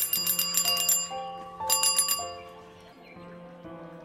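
Bicycle handlebar bell rung in two quick trills of rapid metallic strikes, the first right at the start lasting about a second, the second about a second and a half in and shorter. Background music with a held melody plays underneath.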